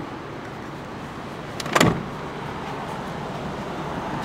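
A light click and then a single solid thump just under two seconds in, over steady outdoor background noise.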